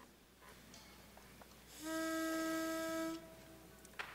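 A single steady keyboard note, held for about a second and a half and then released, giving the choir its starting pitch before an a cappella song. A short click follows near the end.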